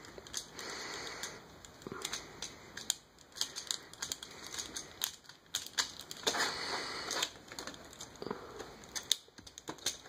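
Hard plastic parts of an Excellent Toys Ptolemy robot figure clicking and scraping as a shoulder pad is worked onto a very tight slide joint. Irregular light clicks run throughout, with a longer scrape about six seconds in.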